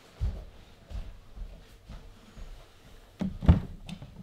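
Handling noise: a few dull knocks and bumps, the loudest about three and a half seconds in, as equipment is fiddled with in a small room.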